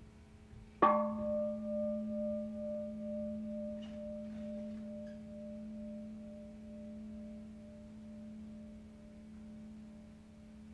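A gong struck once about a second in, ringing on with several tones and a slow wobble in loudness as it fades, over a steady low hum.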